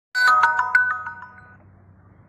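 A short, bright, bell-like chime: a quick run of ringing notes, about six or seven a second. It fades away after about a second and a half.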